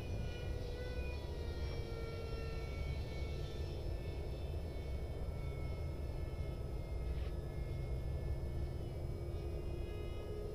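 The electric ducted fan of a 64 mm Mig-15 model jet, heard as a thin whine at a distance, its pitch easing down over the first few seconds as it is throttled back to come in and then holding steady. A steady low rumble lies beneath it.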